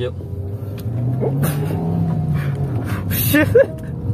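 Suzuki Ertiga's 1.4-litre four-cylinder engine heard from inside the cabin as the car pulls away, its note rising over about a second and then falling again.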